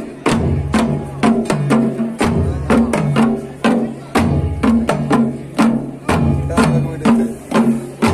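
Traditional Himachali drum ensemble of big double-headed dhol drums and small nagara kettle drums set on the ground, beating a fast, steady rhythm with regular deep booms under sharper strokes.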